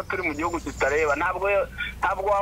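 Speech only: a woman talking.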